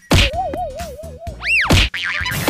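Slapstick cartoon sound effects: two loud whacks, one near the start and one near the end. Between them come a wobbling, warbling tone and a quick whistle-like boing that rises and falls.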